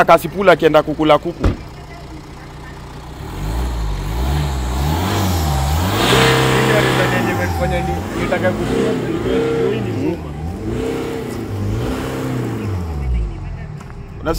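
BMW car engine being revved repeatedly, its pitch rising and falling with each blip of the throttle. One long rev is loudest about six seconds in, followed by several shorter blips.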